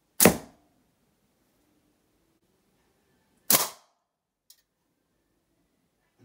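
Two shots from an aluminium slingshot with 0.66 GZK flat bands firing 8.4 mm lead balls, each a single sharp crack, about three seconds apart. A faint click follows about a second after the second shot.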